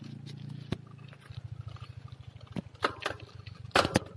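Riding noise from a bicycle on a paved road, picked up by a handheld phone: a steady low rumble of tyres and wind on the microphone, broken by a few sharp knocks, the loudest near the end.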